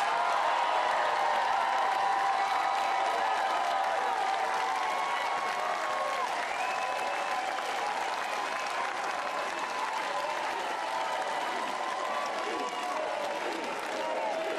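Large rally crowd applauding and cheering: steady clapping with many voices shouting and whooping over it, easing off slightly toward the end.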